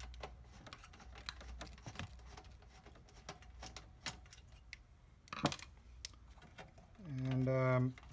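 Screwdriver backing a small screw out of a monitor's sheet-metal chassis: a run of light clicks and ticks, with one sharper click about five and a half seconds in.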